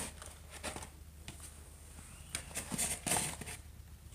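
Light plastic clicks and taps from a multi-disc DVD case's fold-out trays being opened out and handled, a few scattered ticks with a slightly louder cluster about three seconds in.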